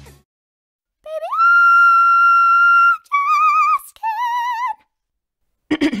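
Loud, high-pitched singing voice: one note slides up and is held for about a second and a half, then two shorter notes with a wavering vibrato follow, the last a little lower.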